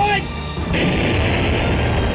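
Artillery fire in battle-zone field audio: continuous low rumbling with booms and a harsh hissing noise that starts suddenly under a second in, with music underneath.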